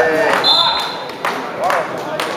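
Voices calling out across a sports hall, with a short, high whistle blast about half a second in. The whistle is most likely the referee's, as the wrestlers set up in the down position on the mat.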